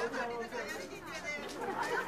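Several people talking over one another in a lively group chatter.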